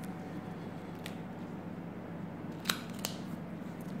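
Small sharp clicks from handling an adhesive plaster and its wrapper as it is put on the skin: a faint one about a second in, then two close together near the end, over a steady low room hum.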